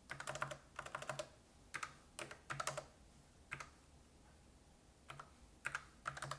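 Computer keyboard keys being typed in quick irregular runs of clicks as a spreadsheet formula is entered, with a pause of about a second and a half past the middle before a few more keystrokes near the end.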